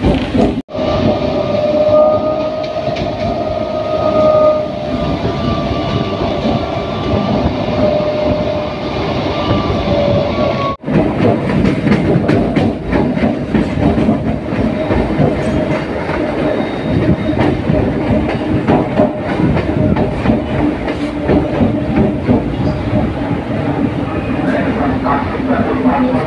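Passenger train running on the track, heard from an open doorway: a steady rumble with a steady whine over the first ten seconds, then rapid wheel clicks as it crosses points and rail joints coming into a station. The sound cuts out briefly twice.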